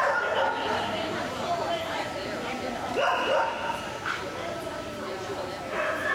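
A dog barking and yipping: a few short, high-pitched calls, the clearest just after the start and about three seconds in, with people's voices underneath.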